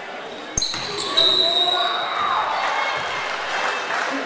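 Basketball game play in a gym: a ball bouncing on the court with a sharp thud about half a second in, a high steady tone lasting about a second, and voices from the players and crowd.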